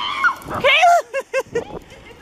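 A woman's high-pitched voice: a drawn-out wail followed by three quick bursts of laughter.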